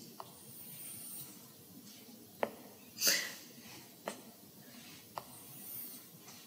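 Stylus tip on an iPad's glass screen: four light clicks of the tip touching down, with faint rubbing as strokes are drawn. A short hiss comes about three seconds in.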